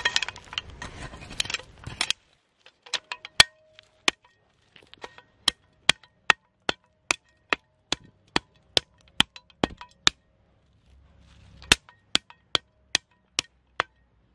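A small metal hand spade scraping loose soil into a hole. It then taps the filled spot down with the flat of its blade in a steady run of sharp taps, a little over two a second.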